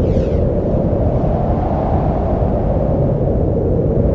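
Steady low rumbling drone from the title sequence's soundtrack, with the tail of a whoosh fading out at the start.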